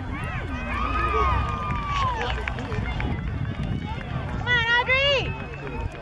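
Sideline spectators at a youth soccer match shouting and calling out to the players, several voices overlapping. There is one long, drawn-out call about a second in, and a loud, high-pitched cry just before the five-second mark.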